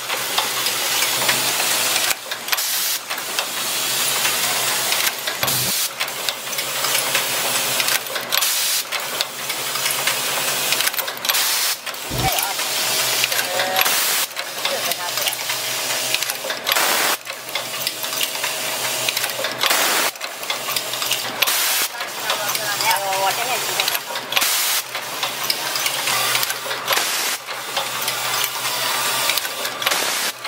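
Automatic micro switch assembly machine running: a continuous rapid mechanical clatter mixed with the hiss of pneumatic air, dipping briefly every few seconds.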